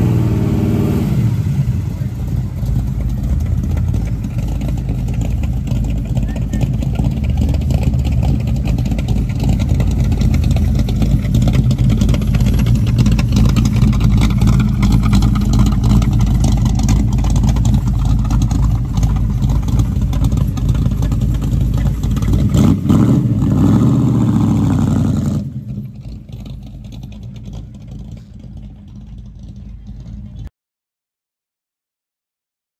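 1970 Chevrolet El Camino's engine running through its dual exhausts, revved up and down near the start and again about three quarters of the way through, with a steady rumble in between. About 25 seconds in it drops to a much quieter run.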